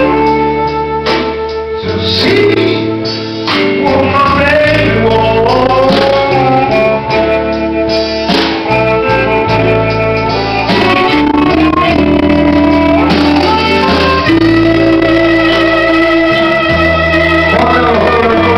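Live blues band playing, with electric guitars over a moving bass line, recorded loud from within the room.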